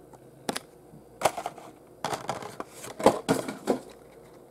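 Carded Matchbox die-cast packaging being handled: the cardboard backing and plastic blister crackle and scrape in several short bursts, the loudest about three seconds in.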